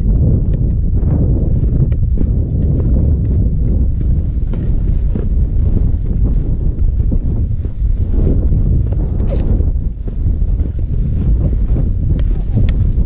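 Wind buffeting a GoPro camera's microphone: a loud, steady low rumble, with faint scattered ticks from skis and poles moving slowly over snow.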